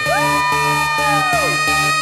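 Live idol-pop song with a steady pulsing beat, over which a long high note slides up, holds and falls away about a second and a half in. Crowd cheering is mixed in.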